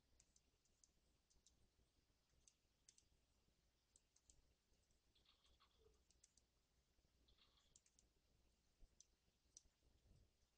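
Near silence: faint room tone with a steady low hum and scattered light clicks throughout.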